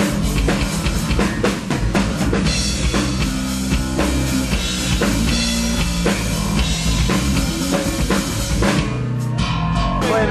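Live rock band playing loud through the stage PA: a drum kit keeps a steady beat under electric guitar.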